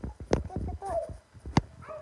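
Irregular knocks and thumps, as of a phone being handled while someone moves about, with a few short, wavering, high whining vocal sounds about a second in and near the end.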